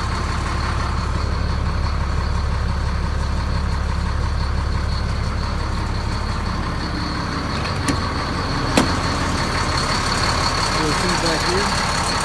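Ford F650 medium-duty truck's diesel engine idling steadily, heard from inside the cab, with a thin steady high whine over the low engine hum. Two short clicks come about eight and nine seconds in.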